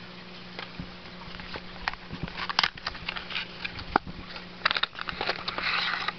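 Small cardboard trading-card box being opened and its cards handled: scattered light clicks and crinkly rustles, busier in the second half, with a longer rustle near the end.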